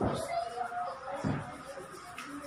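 A utensil knocking against a stainless steel mixing bowl twice, once at the start and again about a second later.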